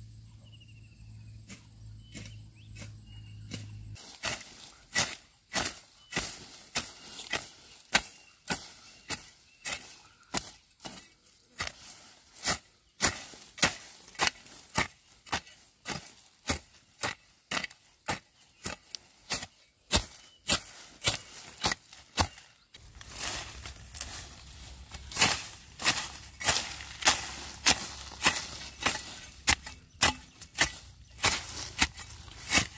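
Iron hoe blade chopping into soil, stroke after stroke at about two a second, while digging up sweet potatoes. The strokes start about four seconds in.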